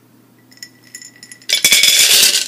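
Dry wood pellets poured from a glass mason jar into a plastic measuring cup: a few light clinks as the jar is tipped, then from about one and a half seconds in a dense, loud rattling clatter of pellets pouring into the cup.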